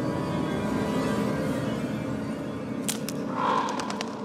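Dark horror-film score: layered, sustained droning tones held at a steady level, with a few sharp clicks a little under three seconds in.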